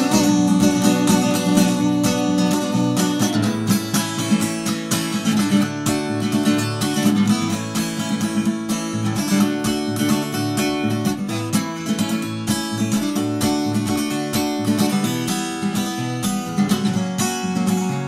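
Acoustic guitar strummed in a steady rhythm: an instrumental passage of changing chords with no singing.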